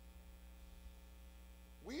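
Faint, steady low electrical hum in the microphone and sound system. A man's voice starts just before the end.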